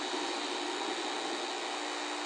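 Steady background noise, an even hiss with a faint hum, in a pause between speech.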